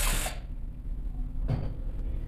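A cordless drill-driver running briefly and stopping about a third of a second in, as it tightens an RCB terminal screw, followed by a single dull knock about 1.5 seconds in.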